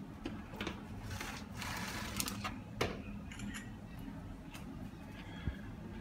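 Scattered light clicks and knocks of a baking tray being handled at an open oven, over a steady low hum.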